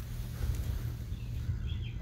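Outdoor background: a low, uneven rumble with a few faint bird chirps near the end.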